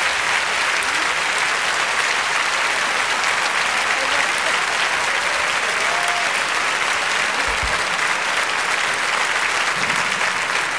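Large live audience applauding steadily in response to an act being introduced.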